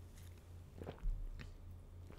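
Faint mouth sounds of a person sipping and swallowing a drink from a small glass, with a few soft clicks about a second in, over a low steady hum.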